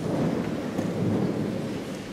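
Audience applause in a large gym hall: a dense patter of many claps, heavy and rumbling in the room's reverberation, fading near the end.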